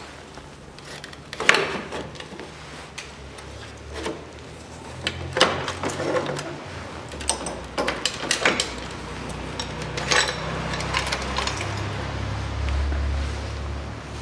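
Irregular clicks, knocks and rattles of hands working among the wiring, plastic connectors and panel parts behind a Land Rover Series III dashboard, over a steady low rumble.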